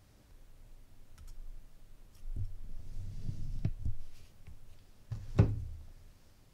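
Handling noise on the work bench: a run of dull low thumps with a couple of knocks, then one sharp knock near the end.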